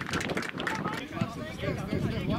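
Footballers' voices shouting and calling out across an open pitch, with a few short knocks in among them.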